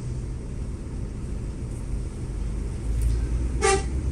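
Steady low rumble of idling traffic heard from inside a car, with one short vehicle horn toot near the end.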